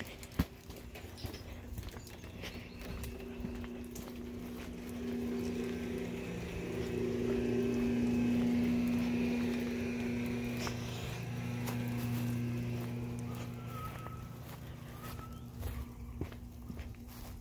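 Swimming-pool pump's electric motor running with a steady hum. It grows louder toward the middle and fades again as it is passed, over light footsteps.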